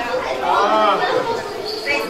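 Chatter of children's voices, with no clear words.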